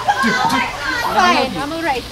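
Several young people's voices shouting and yelling excitedly over one another, high-pitched and with no clear words.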